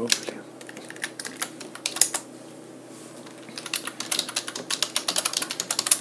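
Computer keyboard keystrokes: a few scattered key presses, a single sharp loud one about two seconds in, then a quick run of typing in the last two seconds.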